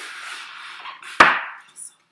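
Floral foam brick rasping and scraping as it is worked for about a second. A single sharp knock follows a little past a second in and is the loudest sound.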